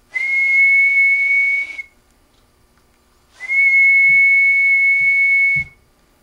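A man whistling a steady high note twice, each about two seconds long, into a CB radio microphone. It is a whistle test that drives the transmitter to its peak output.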